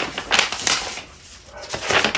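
Sheets of paper rustling and sliding against each other as they are lifted and flipped by hand, in a few short bursts with a quieter pause in the middle.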